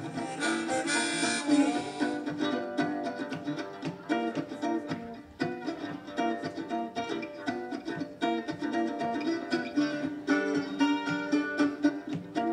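Blues harmonica played from a neck rack over a strummed mandolin, in an instrumental break: long held harmonica notes over a steady, rhythmic strum.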